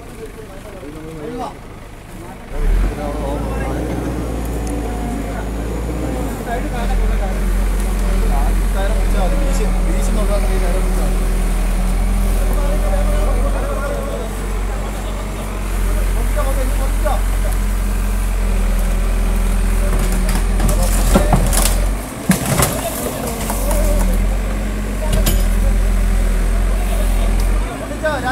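Crane truck's engine running steadily under load as it hoists a car out of a well by ropes, a deep hum that starts about three seconds in and drops out briefly twice near the end; men's voices over it.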